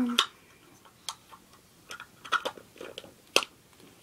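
A small plastic eraser container being handled and opened, giving scattered light clicks and one sharper click about three and a half seconds in.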